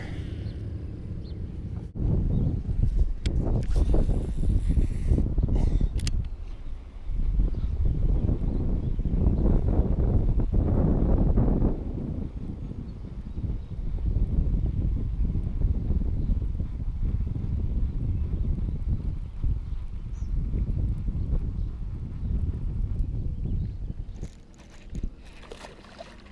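Wind buffeting the camera microphone: a gusty, rumbling noise that rises and falls and eases near the end.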